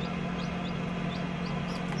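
Newly hatched chicks peeping: short high peeps a few times a second, over the steady hum of the egg incubator.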